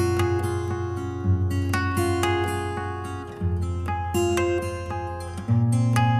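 Background music led by acoustic guitar, plucked and strummed over a low bass note that changes about every two seconds.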